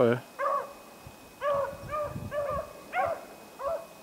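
Beagles giving tongue while running a rabbit in the snow: a string of short, arching yelps and bays, coming in quick clusters of two or three with brief gaps.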